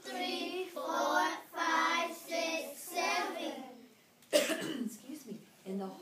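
Children's voices chanting together in a sing-song rhythm, five or six drawn-out syllables over about three and a half seconds, then a single sharp cough a little after four seconds in.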